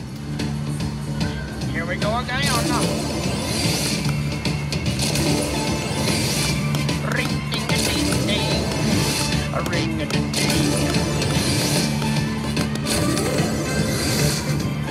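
Star Grand video slot machine playing its bonus-round music, a steady droning loop, with indistinct casino voices in the background.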